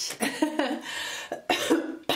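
A woman coughing and clearing her throat in several separate bursts.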